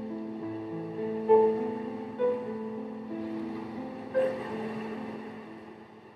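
Slow, sad piano music, a few notes struck and held, fading out toward the end.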